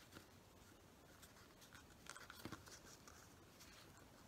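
Near silence, with faint rustling of folded magazine paper as the flaps of an origami heart are tucked in by hand, a few small crinkles about halfway through.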